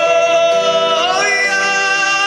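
A man singing a traditional Puyuma song into a microphone, with accompaniment: he holds one long note, then slides up to a higher one about a second in.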